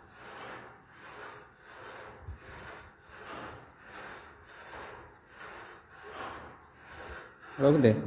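A lat pulldown cable machine worked in steady reps: even, rhythmic rasping swishes, about three every two seconds. A short spoken phrase comes near the end.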